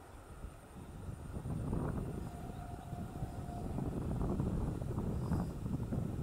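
Electric multiple unit (EMU) local train running away along the track: a low rumble that builds about a second in and stays strong, with a brief faint steady whine a little past two seconds in.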